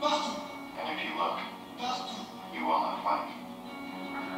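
Film soundtrack: a man's voice in short phrases over a steady background music score.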